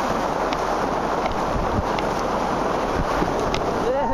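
Whitewater rapids rushing around an inflatable kayak in a steady loud wash of water, mixed with wind on the microphone, with a few light splashes or knocks.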